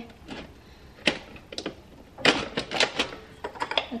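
Coffee pods clicking and clinking against each other and a glass bowl as hands pick through them: scattered sharp clicks, coming quicker in the second half.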